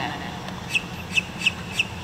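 A bird chirping in a quick run of short high chirps, about four in a second, starting a little before a second in, over a steady low background hum.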